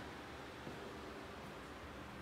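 Quiet room tone: a faint, steady hiss with no distinct sounds.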